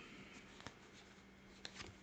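Faint handling of a tarot card deck being shuffled by hand: a few soft card clicks, one about a third of the way in and a small cluster near the end, over a quiet room hum.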